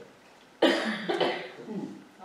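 A person coughing: a sudden harsh cough a little over half a second in, followed by a second one about half a second later.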